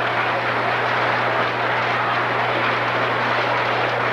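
A large audience applauding steadily in a hall, with a steady low hum underneath.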